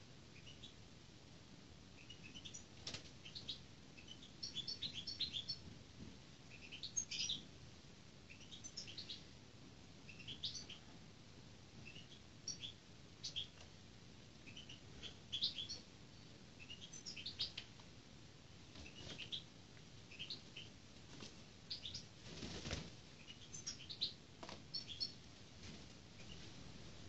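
Small bird chirping in repeated short bursts of high notes throughout. Wing flaps of a sparrowhawk hopping between its perch and the glove, the loudest a rustling flap near the end.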